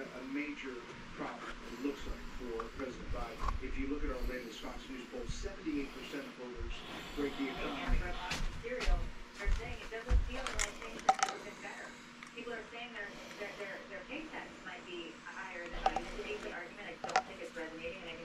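Background television sound: a news broadcast's speech with music under it. A few sharp clicks and knocks come in between about eight and eleven seconds.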